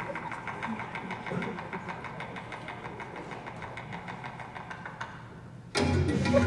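A steady low hum with rapid, even ticking, like a small motor running. Just before the end, loud music starts suddenly.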